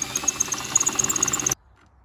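Cordless drill running as its bit enlarges an existing hole in the car's steel body panel to take a rivnut. It stops suddenly about one and a half seconds in.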